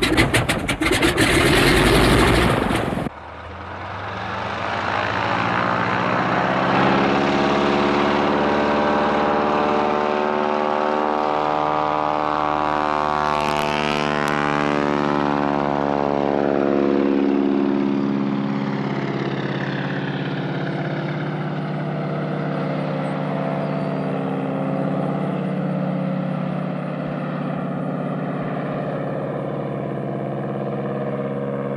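A biplane's radial engine and propeller. It starts with about three seconds of loud, rough noise that cuts off suddenly, then runs up in pitch. About halfway through the plane passes by low with a falling pitch, then holds a steady drone as it climbs away.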